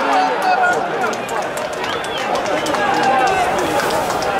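Men's voices shouting and calling across an open football stadium, several overlapping, over general crowd noise.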